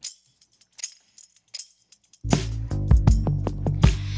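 A few short computer-keyboard clicks, then about two seconds in playback of a song's mix starts abruptly: deep bass and steady drum hits with tambourine.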